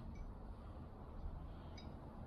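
Quiet outdoor background: a faint low rumble with two faint small ticks, one just after the start and one near the end.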